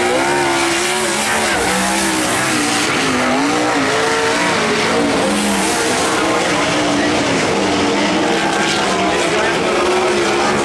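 A winged sprint car's V8 engine at racing speed on a dirt oval lap. The engine note rises and falls again and again as the throttle is worked through the corners and down the straights.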